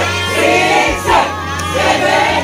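A group of young voices chanting and shouting together in a drill cheer, with crowd voices around them, over a steady low hum.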